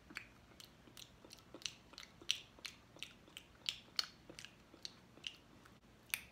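Faint mouth sounds of someone chewing a soft chocolate-filled marshmallow snack: irregular small clicks and smacks, two or three a second.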